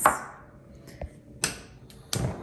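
A gas range burner's knob being turned on, with three short sharp clicks of its igniter about half a second apart.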